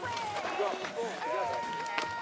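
Spectators' voices calling out encouragement to a downhill mountain-bike rider coming down the trail.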